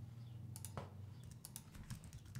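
Faint computer keyboard and mouse clicks: a handful of scattered short clicks over a low steady hum.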